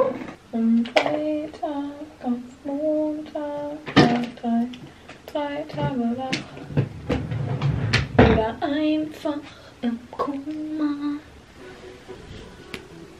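A woman's voice singing a tune without words, in short held notes that step up and down. A few sharp clicks and a brief rustle come about eight seconds in.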